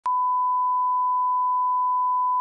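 A 1 kHz line-up tone that goes with SMPTE colour bars: one steady, unbroken pure beep that switches on with a faint click at the very start.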